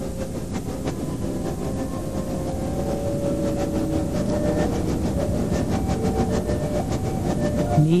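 Large stadium crowd applauding and cheering, a dense wash of clapping and many voices that swells gradually.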